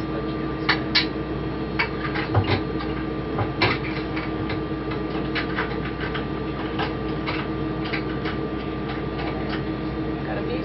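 Steady hum of space-station cabin ventilation. Over it come irregular clicks, knocks and rustles as the Robonaut 2 robot is worked out of its foam packing and box. The handling noises are densest in the first few seconds.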